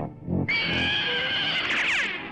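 Cartoon soundtrack: a short low thump, then a long high note with many overtones held for about a second and a half, sliding down in pitch near the end.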